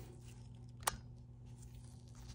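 Low, steady hum of a laminar flow hood's blower, with a single sharp click a little under a second in.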